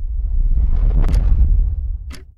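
Cinematic title sound effect: a deep rumble that swells in, with a rushing whoosh that builds to a sharp hit about a second in, then begins to die away near the end.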